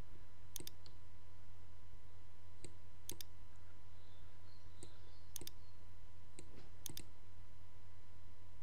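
Computer mouse buttons clicking about seven times, several as quick double clicks, over a steady low hum.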